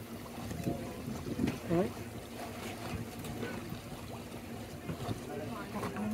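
Electric tour boat under way on a lake: the steady hum of the boat and the wash of water. Indistinct voices are heard briefly in the background.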